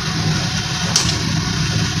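A spatula stirring rice in a steel pan, with one sharp scrape about a second in, over a steady low hum.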